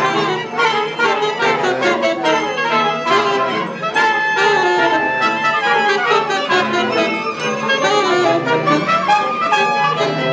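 Live acoustic ensemble of trumpet, clarinet and violins playing together in a dense, overlapping tangle of lines, with the brass loudest. A few notes are held above the texture for a couple of seconds about four seconds in.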